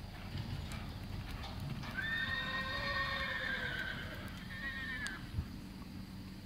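A horse whinnying: one long call, about three seconds, slightly falling in pitch, starting about two seconds in. Dull hoofbeats of a cantering horse on soft arena dirt run underneath.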